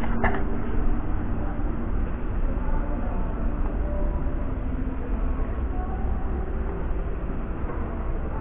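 Steady low rumbling background noise with a faint hiss above it, even throughout with no distinct events.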